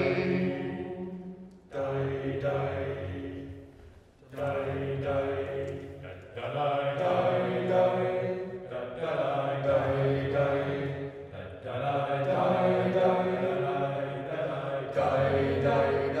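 Men's choir singing in low, sustained chorded harmony. The sound dies away twice in the first four seconds, then fuller phrases follow.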